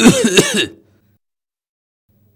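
A man clearing his throat once, briefly, at the start.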